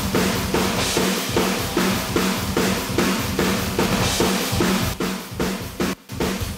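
Metal drum room-mic tracks playing back: a drum kit heard through its room microphones, with fast, evenly spaced kick and snare hits, about five a second.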